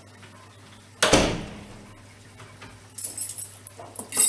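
A single loud bang about a second in, with a deep thud that rings away over most of a second. Near the end comes a light, high jingling clatter.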